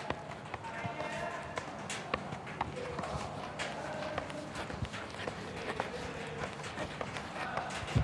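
A football being juggled on the foot: a run of light, irregular taps as the ball is struck again and again, over faint background voices.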